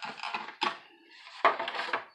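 A flimsy plastic disc case being handled and opened, with irregular plastic clicks and rattles of the stacked discs inside. The loudest clatter comes about one and a half seconds in.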